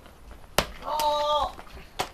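A hard open-hand slap on a man's back about half a second in, followed at once by a short held cry from a voice, and another smack near the end.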